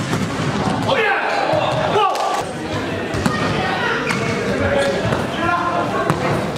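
Light volleyball game in a gym: players shouting and calling across the court, with a few sharp hits of hands on the soft plastic ball.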